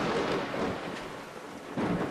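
Rumbling thunder over steady rain, swelling again near the end.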